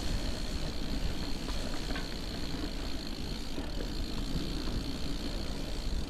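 Gravel bike rolling along a dirt forest trail, picked up by a bike-mounted action camera: a steady rumble of tyres on soil and wind across the microphone, with a few faint clicks of grit under the tyres. A thin steady high-pitched buzz runs over it and stops just at the end.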